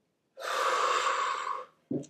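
A woman taking one long, deliberate deep breath: a steady breathy rush starting about a third of a second in and lasting about a second and a half.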